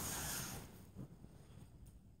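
The breathy tail of a child's laughter fading out within the first half second, then near silence: quiet room tone with a faint short sound about a second in.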